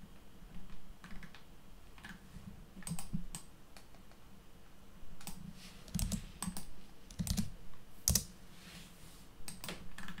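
Typing on a computer keyboard: irregular key clicks in short flurries, with the loudest keystroke about eight seconds in.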